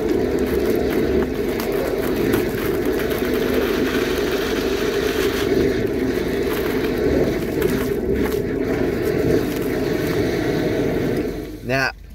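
Hydro jetter running steadily, its high-pressure water jet working inside a blocked drain pipe and spraying dirty water back out of the pipe opening around the hose. The steady noise stops near the end. The nozzle is getting stuck, either at a bend or at the blockage.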